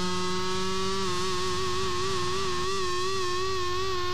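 Electric guitar holding one long ringing note after the rest of the band stops, with a slow wavering vibrato from about a second and a half in; a lower note dies away about a second in.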